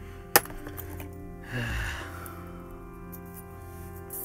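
A single sharp clack as a small plastic box cutter is dropped back into an aluminium tool box, about a third of a second in, over steady background music.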